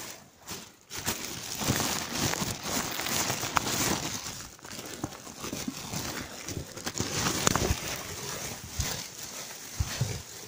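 Clear plastic bags and bubble wrap being handled and crumpled as someone digs through them. There is a continuous crinkling and crackling, with many sharp clicks, starting about a second in.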